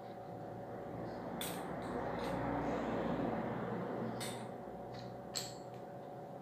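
Handling noise from a pump air rifle being turned over in the hands: a soft rubbing rustle that swells and fades, with about five light clicks and knocks from the gun's parts.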